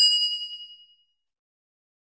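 A single bright electronic ding, the bell sound effect of a YouTube subscribe-button animation, struck once and fading out within about a second.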